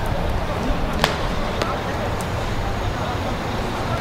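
A football being kicked gives a sharp knock about a second in, followed by two fainter knocks, over a steady low background rumble.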